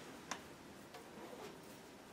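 A sharp click about a third of a second in, then a few faint ticks: painting tools and materials handled on a worktable.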